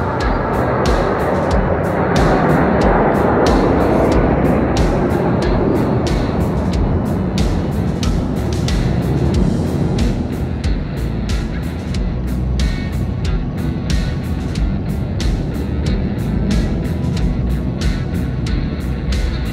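Jet roar from a formation of military jets flying over. The roar is loudest a few seconds in and fades after about ten seconds, with music playing over it and sharp clicks throughout.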